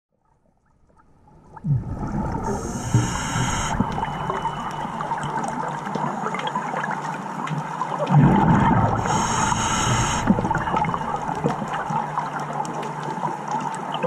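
Scuba diver breathing through a regulator, recorded underwater: a hiss on each inhale about two and a half seconds in and again about nine seconds in, and a low burble of exhaled bubbles around eight seconds in. Fine crackling runs underneath throughout.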